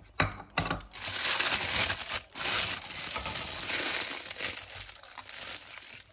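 Thin plastic disposable piping bag, filled with melted white chocolate, crinkling steadily as it is handled and gathered closed, starting with a sharp crackle and easing off near the end.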